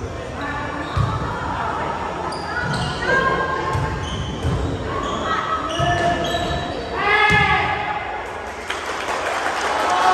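Indoor volleyball rally in a gym: a series of thuds from the ball being struck and from players' feet, with sneakers squeaking on the hardwood floor. Players shout during the play, with one loud call about seven seconds in, and the hall echoes.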